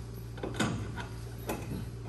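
A few light metallic clicks and knocks from a steel coil spring being handled and fitted over a steel gear-leg tube, about three in two seconds.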